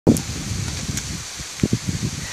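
Rustling, rumbling noise of wind and rain on a handheld phone microphone, with a few short knocks from the phone being handled.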